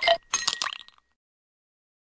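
Glassy, clinking sound effect for an animated logo: two bright bursts within the first second, then it cuts off.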